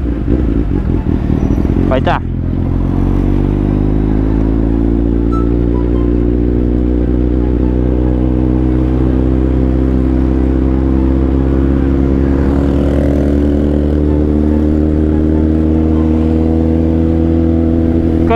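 A motorcycle engine heard from the rider's seat. About two seconds in, its pitch and level drop briefly, like a gear change. It then climbs slowly and steadily in pitch as the bike gathers speed.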